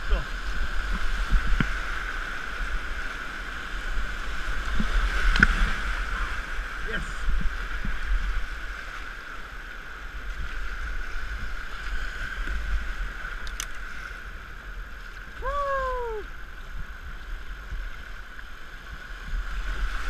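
Floodwater rushing and churning through river rapids around a kayak, with occasional paddle splashes. It is picked up by a GoPro action camera worn by the paddler, so a heavy low rumble runs under it.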